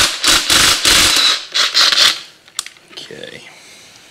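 Cordless power tool run in several short bursts, backing out the last bolt of a C4 automatic transmission's extension housing, followed by a few light clicks.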